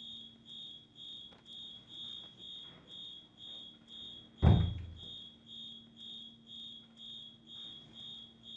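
High-pitched electronic alarm beeping in a steady repeating pattern of about two beeps a second, like a smoke or fire alarm. About four and a half seconds in there is a single loud thump.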